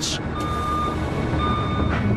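Deck crane's warning beeper sounding while it hoists a load: two even beeps about a second apart, each about half a second long, over a steady low rumble of machinery.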